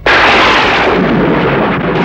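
Thunder sound effect: a sudden loud crack at the very start, running on as a loud, steady roll.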